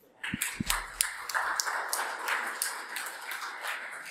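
Audience applauding, starting about a quarter second in and thinning out toward the end, with two low thumps near the start.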